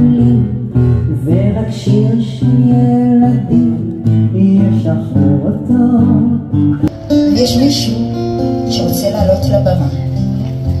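Live acoustic guitar accompanying a sung Hebrew song, with the voice line bending above the guitar. About seven seconds in there is a sharp click, and the sound turns abruptly brighter as a different live recording begins.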